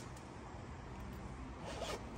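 Zipper on a fabric duffel bag being pulled open, faint, with a short sharp click at the start.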